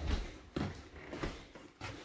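A few soft footsteps on a tiled floor indoors, about one every half second or so.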